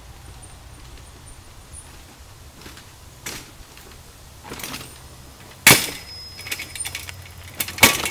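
Surly Big Dummy steel long-tail cargo bike rolling down rock ledges, its tyres knocking over the rock and the rack and frame clattering with each drop. The loudest knocks come a little past halfway through and near the end, with lighter rattling between them.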